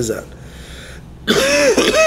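A man clearing his throat into his hand, two harsh rasping pushes in quick succession starting just over a second in.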